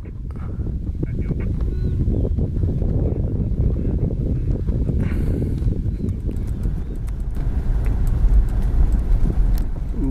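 Hooves of a running wildebeest herd drumming on the ground, a dense, continuous patter of many hoofbeats. It builds over the first second or two, then stays loud.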